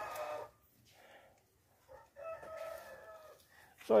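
Rooster crowing: the tail of one crow in the first half-second, then a second long crow starting about two seconds in.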